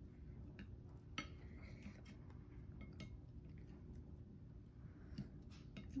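Chopsticks clicking faintly against a plate, a few scattered taps spread over several seconds.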